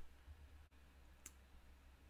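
Near silence with a steady low hum, and one faint computer mouse click a little past the middle.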